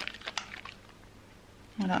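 Wet hands rubbing together in a lather of slime shower gel, making a few short wet clicks in the first second, then going quiet.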